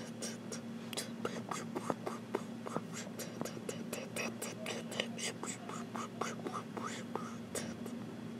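Typing on a tablet's on-screen keyboard: a quick, irregular run of light taps, several a second, over a faint steady hum.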